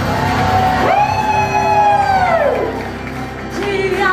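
Live praise-and-worship music: a woman singing into a microphone over steady instrumental accompaniment, holding one long high note that falls away before a new phrase begins near the end.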